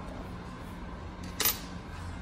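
A single sharp metal click about a second and a half in, as the DDEC VI injector and its steel disassembly fixture plate settle into place in the vise, with a brief ring after it. A low steady hum runs underneath.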